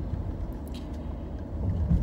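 Steady low rumble of a car heard from inside the cabin while driving, with a louder low thump near the end.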